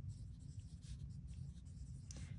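Mechanical pencil writing numbers on workbook paper: a string of short, faint pencil strokes.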